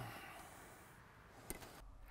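Near silence: faint room tone, with one short faint click about one and a half seconds in.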